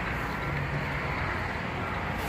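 Semi truck's diesel engine running, a steady low hum heard from inside the cab.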